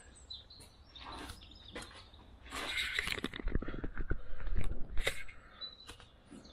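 Handling noise: a run of clicks, crackles and knocks starting about two and a half seconds in, with low thumps as the camera is picked up and moved.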